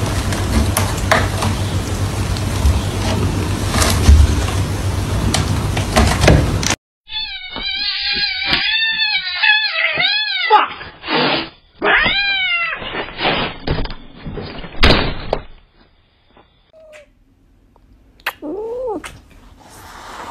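A cat meowing over and over in drawn-out calls that rise and fall in pitch, several in a row in the middle, and one more near the end. Before the calls there are several seconds of dense noise with a few knocks.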